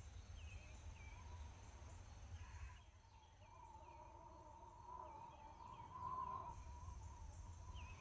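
Very faint outdoor ambience: small birds giving short high chirps over and over, over a low rumble.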